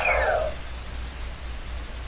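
Swoosh sound effect of an electronic toy saber (Power Rangers Beast-X saber) being swung: a falling sweep that fades out about half a second in, leaving a steady low rumble.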